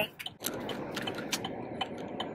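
Steady road and cabin noise inside a moving car, with a few light ticks scattered through it.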